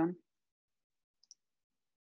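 Two faint computer mouse clicks in quick succession, about a second and a quarter in.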